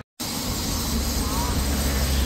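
Steady outdoor background noise: a low rumble with hiss, starting right after a short dropout to silence, with a faint short rising tone about midway.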